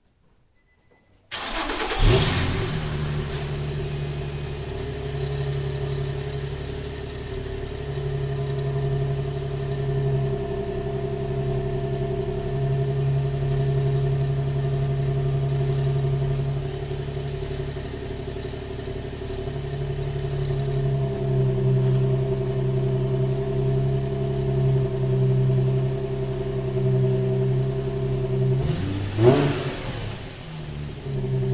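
A stock-exhaust 2004 Infiniti G35's 3.5-litre V6 is started from cold about a second in. It flares up briefly, then settles into a steady fast cold idle. Near the end it takes one quick rev and drops back.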